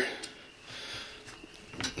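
Faint rustling of a cloth rag being stuffed under a rifle's pistol grip, with a few light handling taps.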